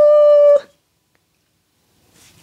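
A woman's voice holding one long, steady sung note, the drawn-out end of a playful "coucou!" greeting, which stops about half a second in.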